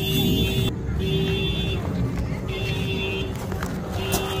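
A vehicle horn sounding in repeated blasts, each under a second long, three in a row.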